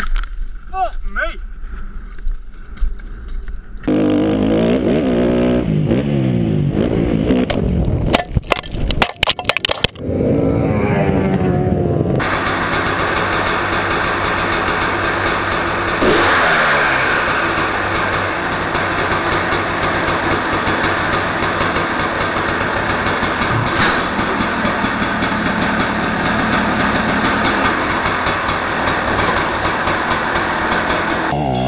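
Dirt bike engine and a voice in short cut-together clips, then from about twelve seconds in a two-stroke motocross bike engine running steadily on a stand, revved up about sixteen seconds in.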